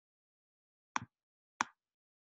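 Two short clicks of a computer mouse, about a second in and again just over half a second later.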